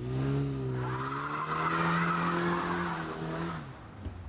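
Car engine revving hard as the car pulls away, with tyre squeal. One steady engine note that rises slightly, then stops near the end.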